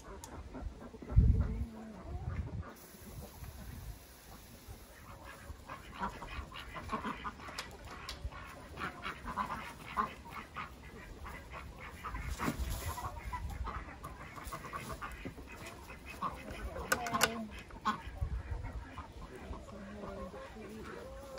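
Backyard poultry calling in scattered short clucks and squawks. A loud low thump about a second in.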